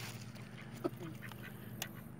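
Mallard ducks on the water giving a couple of short quacks about a second in, over a steady low hum.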